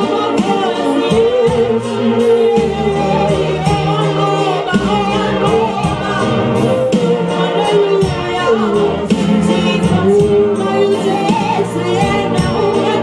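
Gospel song: a woman singing lead into a microphone over instrumental accompaniment with a steady beat.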